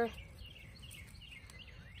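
Faint songbird chirps, a few short high calls, over a quiet, steady outdoor background hiss.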